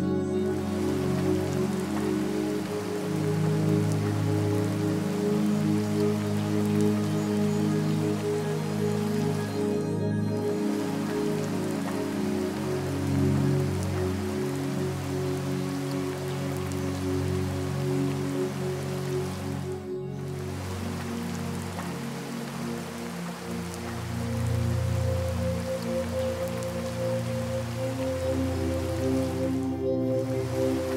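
Slow, soft ambient music of long held chords over the steady sound of falling rain; a deeper, fuller chord comes in about three-quarters of the way through.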